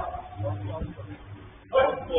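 Players' voices calling out during the game, quieter at first, then a sudden loud shout near the end.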